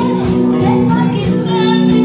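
Small live band with guitars playing a slow French chanson, with a woman's high voice singing held notes over it.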